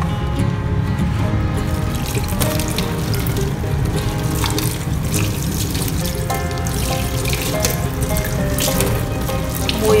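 Kitchen tap running into a stainless steel sink while a plastic plate is rinsed by hand under the stream. Background music plays throughout.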